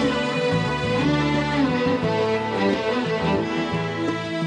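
Live band playing an instrumental passage of a Sudanese song: a section of violins carrying the melody in unison, with electronic keyboard accompaniment.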